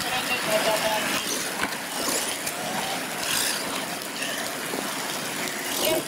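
Radio-controlled monster trucks driving through wet mud, their motors running and tyres working in the muck, under a steady hiss of rain.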